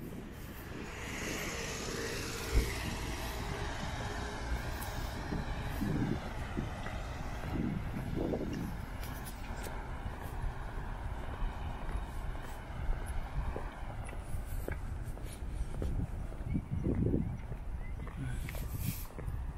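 A motor vehicle driving past on the road, its tyre and engine noise swelling from about a second in and fading away by about fourteen seconds.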